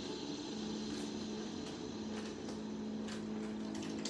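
A steady low hum with a few faint, scattered clicks and rustles of someone rummaging for something away from the microphone.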